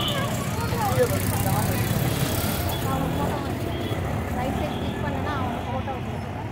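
Busy street-market background: scattered voices talking, over a steady low rumble of road traffic.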